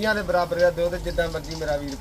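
A man's voice talking, with a bird cooing.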